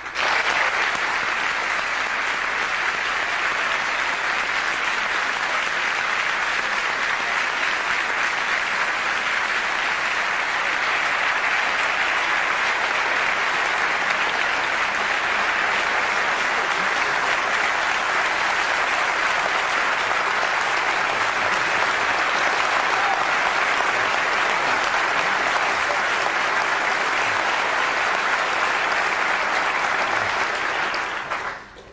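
A large auditorium audience applauding, a dense, steady clapping that starts suddenly and holds throughout, dying away at the end.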